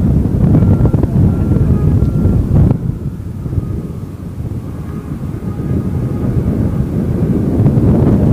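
Wind buffeting the microphone: a loud, gusty low rumble that eases in the middle and builds again near the end.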